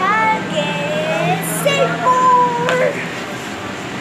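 A young girl's high, sing-song voice with gliding pitches and one long held note about two seconds in.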